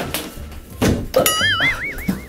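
Background music with a steady low beat. Just under a second in come a couple of thumps, then a cartoon-style sound effect: a bright tone whose pitch wobbles up and down about five times a second.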